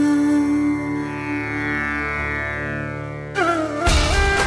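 Indian-style dramatic background music: a long held drone with gliding notes near the end, then a sudden loud hit just before the end as the music changes.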